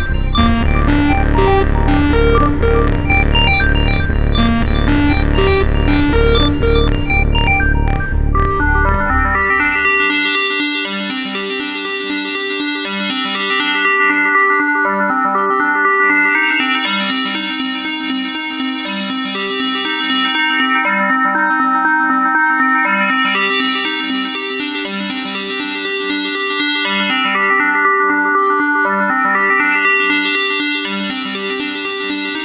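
Electronic drum and bass track made with software synthesizers: a driving beat with heavy bass for about the first nine seconds, then the drums and bass drop out, leaving a repeating synthesizer pattern whose filter sweeps slowly open and closed about every six seconds.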